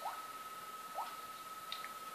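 A faint steady high-pitched whine, with two short rising squeaks about a second apart and a couple of light clicks near the end.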